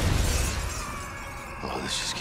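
A crash of shattering glass over the last hit of the trailer music, dying away over about a second into a quieter stretch, with a short sharp sound near the end.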